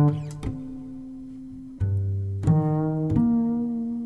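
Double bass music: a few low notes plucked pizzicato, each ringing on into a held, steady tone.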